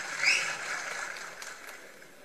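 A short soft swish, the transition sound effect of a channel logo ident, just after the start, over a low hiss that fades away.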